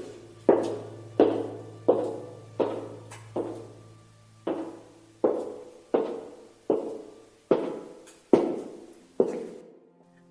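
Loud, slow footsteps of a woman's heels on a cobbled street, about a dozen even steps each ringing out with an echo, with a brief break partway through.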